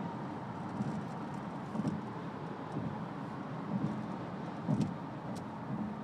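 Steady road and engine noise heard inside a moving Honda CR-V. A low rumble swells about once a second.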